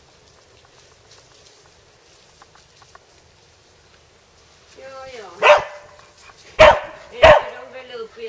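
Border collie barking: after a faint, quiet stretch, a brief whine falling in pitch about five seconds in, then three loud sharp barks about a second apart near the end.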